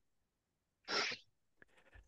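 A single short breathy puff, like a sharp exhale, about a second in, with near silence around it.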